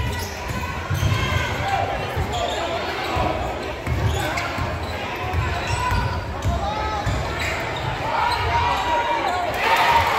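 Basketball bouncing again and again on a hardwood gym floor as a player dribbles, the thuds coming at an irregular pace in a large gym, with spectators talking over them.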